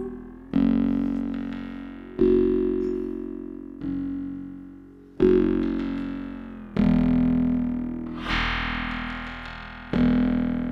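La Diantenne 2.0, a self-designed and self-built electronic instrument, playing a slow run of six synthesizer notes. Each note starts sharply and fades away before the next, about one every one and a half seconds.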